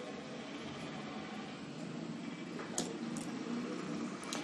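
Low, steady room noise: an even hiss with a faint hum, and two short soft hissy sounds near the end.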